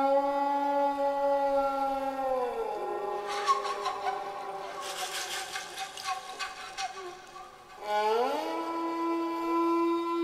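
Instrumental music led by a bowed string instrument: long held notes slide down in pitch about two and a half seconds in. A stretch of quick dry clicks and rattles follows, then a note slides up and is held again near the end.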